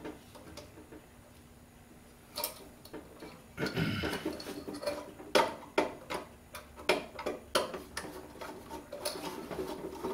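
Hand work on a sheet-metal electrical box with a screwdriver: one light click a little over two seconds in, then from a few seconds in a run of irregular clicks and metal taps as the box is handled and its fittings are worked.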